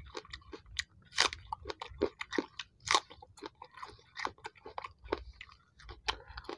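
Raw red onion being chewed in the mouth: wet, crisp crunches at an uneven pace, two of them louder, about a second in and about three seconds in.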